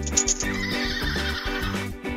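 Horse whinny sound effect: a few quick clicks at the start, then a wavering call lasting about a second and a half, laid over background music.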